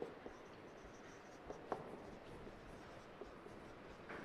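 Whiteboard marker writing on a whiteboard: faint rubbing strokes, with a couple of light clicks about a second and a half in.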